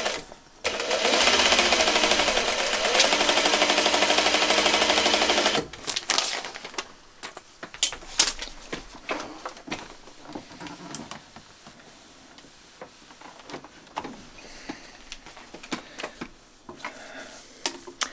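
Juki straight-stitch sewing machine running fast for about five seconds, stitching a seam, then stopping abruptly. After that come quieter small clicks and rustles of scissors and fabric being handled.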